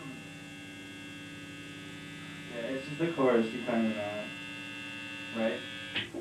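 Steady electrical hum and buzz from idling guitar amplifiers, a stack of constant tones with no playing over it. A person's voice breaks in briefly a few times about halfway through and near the end.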